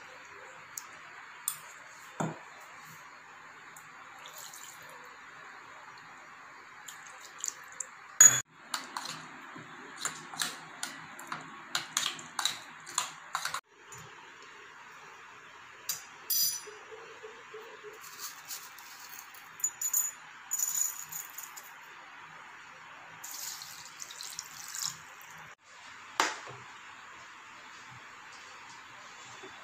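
Kitchenware being handled over a steady background hiss: scattered clinks and knocks of a steel mixer jar, spoon and tumbler against a ceramic bowl and the counter. There is a sharp knock about 8 s in, then bursts of quick clinks, with water being added to tamarind and mixed by hand in the middle stretch.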